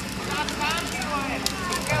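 Children's high voices and crowd chatter, with a few sharp clicks.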